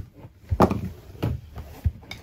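Three sharp knocks, about half a second apart, from parts being handled while an RV converter/charger is fitted into its bay.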